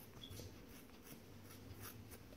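A few faint snips of small sharp scissors cutting through wool yarn loops of a punch-needle embroidery, trimming the pile.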